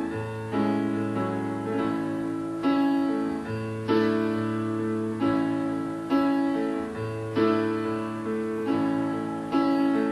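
Piano playing a slow run of full chords, a new chord struck about every second and left to ring over a low bass note that shifts from time to time.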